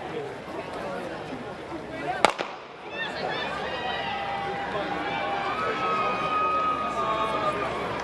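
Starter's gun fires once about two seconds in, signalling the start of a distance race. Crowd voices before the shot give way to spectators cheering and shouting afterwards.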